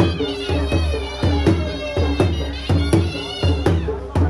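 Music of high, wavering reed pipes over a steady, driving pattern of drum beats, several strokes a second.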